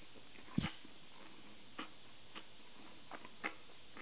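Close-miked eating of a sushi roll filled with rolled omelette: one soft thump about half a second in, then a few faint, scattered chewing clicks.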